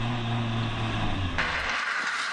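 Car engine running steadily at a constant pitch. About one and a half seconds in, the engine note drops away and a hissing noise takes over.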